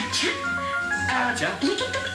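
Hindi film dialogue over background music with held melody notes.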